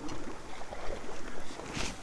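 Wind buffeting the microphone outdoors by open water, an uneven rumbling noise, with a short rustle near the end.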